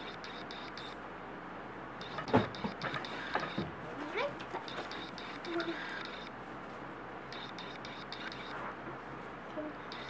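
A young girl's playful wordless vocal sounds, mostly in the first half, over steady background noise, with one sharp knock about two seconds in that is the loudest sound.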